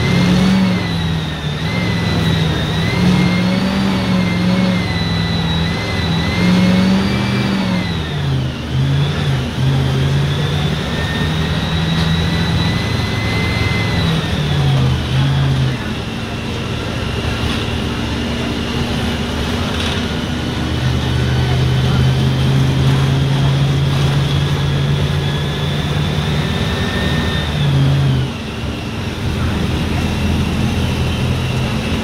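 Mercedes-Benz OF-1519 BlueTec 5 bus's front-mounted diesel engine heard from inside the cabin, pulling and easing off with its pitch stepping up and down as the driver works the throttle and gears, with a high whine that rises and falls along with it.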